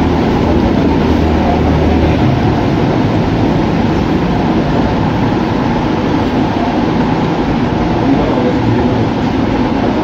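Loud, steady, low-pitched continuous rumbling noise with no distinct strokes or rhythm.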